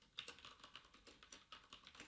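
Computer keyboard being typed on: a quick, uneven run of faint keystrokes as a few words are typed.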